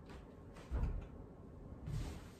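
Dull thud of feet on the floor about three quarters of a second in, from a slide-up step and roundhouse kick, with a softer thump near the end.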